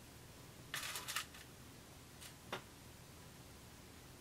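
Soft rustling of knit fabric being handled and pinned by hand: a short cluster of rustles about a second in, then a small click a little after two and a half seconds.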